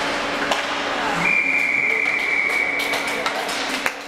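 A referee's whistle in one long steady blast of about two seconds, stopping play in an ice hockey game, over the noise of the rink hall. A few sharp knocks sound near the end.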